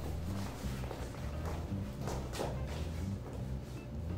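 Background music with a steady bass line, over a few footsteps of shoes on the hard studio floor as a person walks away.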